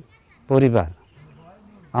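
A man's voice: one short drawn-out syllable about half a second in, falling steeply in pitch, then a pause. A steady, thin, high-pitched tone runs underneath.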